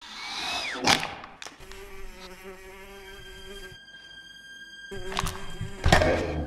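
Pages of a paper flipbook riffled under the thumb, giving a steady fluttering buzz, with a few sharper thumps about a second in and near the end.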